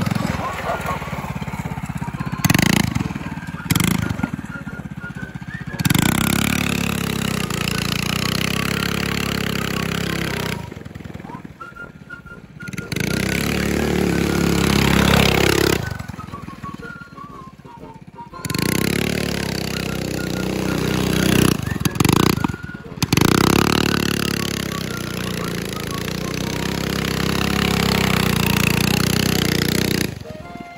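Stage 1 Predator 212 single-cylinder four-stroke engine on a custom minibike trike, revving up and down as the throttle is worked, with several sudden drops to a much quieter low idle.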